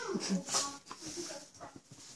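Small dogs play-fighting, with a few short pitched vocal sounds from a dog; the first rises and falls in pitch near the start.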